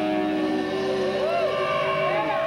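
Live rock band playing, recorded through a camcorder's built-in microphone. Guitars hold steady droning notes, and from about a second in, swooping glides rise and fall in pitch over them.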